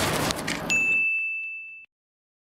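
A noisy rush stops about half a second in, then a single high, bell-like ding rings for about a second and fades away.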